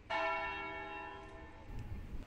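A single toll of a church bell: one stroke that rings with several held tones and slowly dies away.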